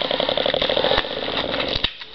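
Packing tape being peeled off a cardboard mailing box: a fast, ratcheting buzz that eases off about a second in.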